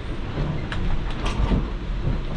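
Steady low rumble and rushing noise inside the cabin of a catamaran under way at sea, with a few light clicks of a metal ladle against a pot and plate.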